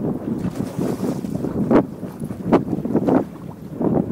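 Wind buffeting the microphone and choppy water slapping against a bass boat's hull, with a few short splashes as a hooked largemouth bass is fought to the side of the boat.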